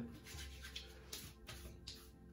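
Palms rubbing oily aftershave lotion together and over a freshly shaved face: four or five faint, soft brushing rubs.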